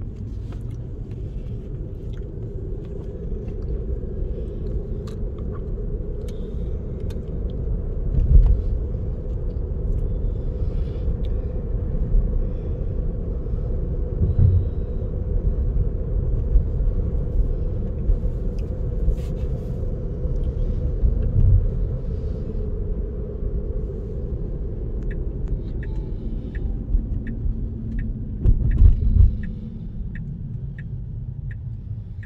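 Steady road and tyre rumble inside a moving Tesla's cabin, with a few heavier low swells from bumps or turns. Near the end a light turn-signal ticking starts, about two ticks a second.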